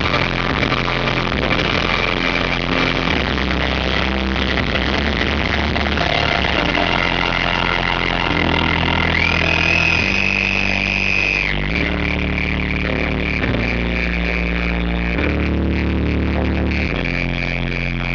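Post-rock band playing loud live music, with sustained bass notes that change every second or two under dense guitar sound. A high held tone slides up about nine seconds in and holds for about two seconds. The sound is heavily saturated and distorted by the photo camera's built-in microphone.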